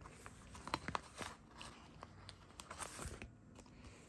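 Faint, irregular crinkling and clicking of a plastic binder pocket page as baseball cards are pulled out of its pockets by hand, a little louder about a second in.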